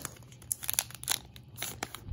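Foil Pokémon booster pack wrapper crinkling in the hands: a handful of sharp, irregular crackles.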